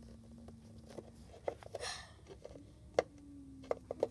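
Quiet handling sounds: a few light clicks and taps of a small plastic toy figure against a plastic playset, the sharpest about three seconds in, over a faint steady hum.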